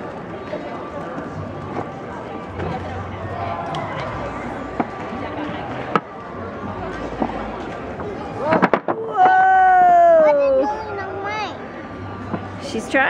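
Large wooden blocks of a giant stacking tower clattering down onto a wooden tabletop about eight and a half seconds in, after a few single wooden knocks as blocks are set in place. Right after the collapse a child lets out one long cry that falls in pitch, the loudest sound.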